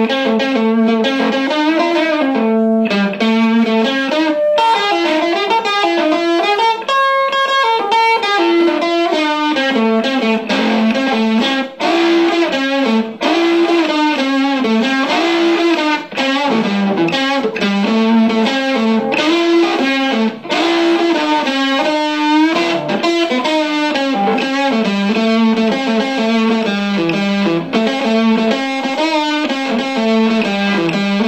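A 1974 Fender Stratocaster played through a restored 1952 Webster 166-1 valve amplifier fitted with a Weber alnico Sig10A speaker. It plays a continuous string of single-note melodic phrases with short breaks between them.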